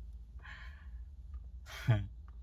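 A man lets out a breathy sigh, then makes a short voiced sound near the end, over a low steady hum.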